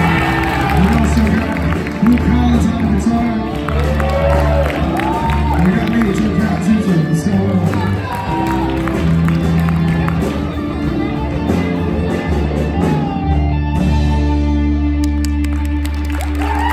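Live rock band playing: electric guitars, bass guitar and a drum kit, with a male singer's voice over them, heard from the audience in a hall.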